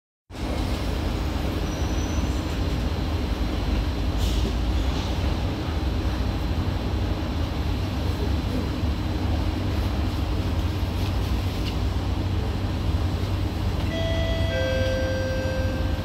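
Steady low hum of a stationary SMRT C151B metro train, its ventilation and onboard equipment running while it stands at the platform with the doors open. Near the end a two-note falling chime sounds, the warning that the doors are about to close.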